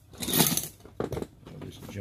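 Metal hand tools clinking and clattering against each other as they are rummaged through on a workbench, with the loudest rattle about half a second in and a few sharper knocks a second in.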